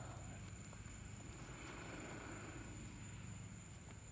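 Faint night-time outdoor ambience: a steady high-pitched insect drone, typical of crickets, over an even low rumble.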